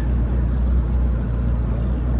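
Bass boat's outboard motor running steadily while under way, a constant low drone.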